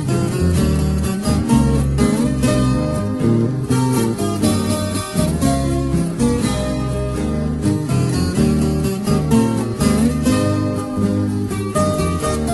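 Instrumental interlude of a Brazilian música caipira song: plucked acoustic guitars playing a quick melody over a steady bass line, with no singing.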